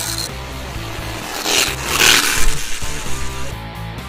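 Background music, with the buzzing rattle of a Turbospoke Classic noise maker on a child's bicycle, its plastic card flapping against the spokes, swelling and fading as the bike passes about two seconds in.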